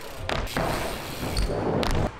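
BMX bike riding on skatepark ramps: a rolling rumble of the tyres broken by knocks, with a heavy thump about a second and a half in, like a landing.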